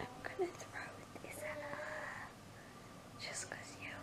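A person whispering softly close to the microphone, in two short stretches.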